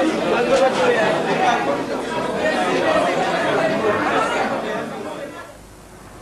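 A group of people talking at once: lively, overlapping chatter with no single voice standing out, dropping away shortly before the end.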